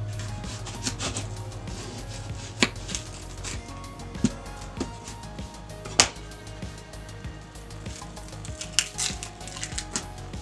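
Paring knife cutting an onion on a plastic cutting board: sharp, irregular knocks of the blade against the board, spaced a second or more apart.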